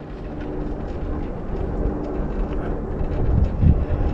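Wind blowing on the microphone during a chairlift ride, a steady low rush with a faint steady hum beneath it.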